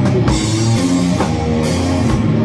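Live doom/stoner sludge rock: a heavy electric guitar riff played over a full drum kit, with cymbal crashes about a third of a second in and again near the end.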